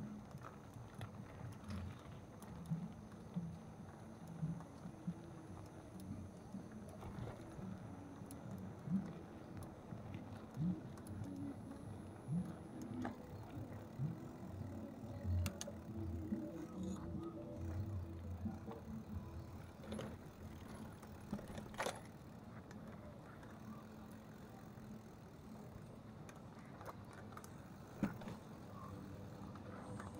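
Bicycle riding over a rough dirt and sand track: an uneven rumble from the tyres, with scattered rattles and knocks from the bike over the bumps.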